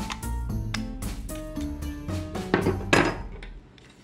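Background music with a steady beat, which stops shortly before the end. About two and a half to three seconds in, a few louder sharp clicks come through: a knife blade prying the plastic end cap off an aluminium power bank shell.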